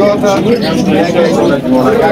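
Domestic pigeons cooing in a crowded loft, with men's voices over them.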